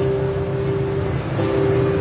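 A motorcycle engine running steadily in the street, a low drone, with a couple of held tones over it that break off briefly about a second in.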